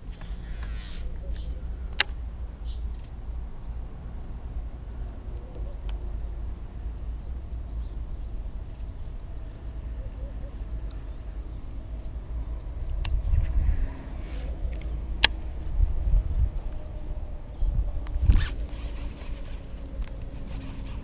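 Baitcasting reel being cranked to retrieve an underspin lure, with a few sharp clicks, over a steady low rumble.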